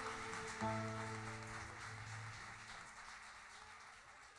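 Last chord of an Arab music ensemble ringing out and dying away, with a fresh low note sounding about half a second in, as the whole sound fades out.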